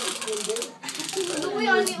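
People talking in a room, with a short stretch of rustling in the first part.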